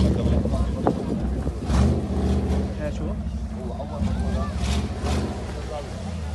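Off-road vehicle's engine running with a steady low drone, under the chatter and shouts of a crowd of spectators, with a few short rushes of noise.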